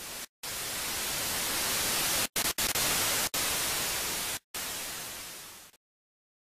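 Television static hiss, swelling up and then broken by several sudden short dropouts, before fading down and cutting off abruptly near the end.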